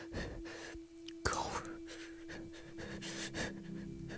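A man sobbing and breathing raggedly in grief, with one loud gasping sob about a second in, over a single held music note; low music comes in near the end.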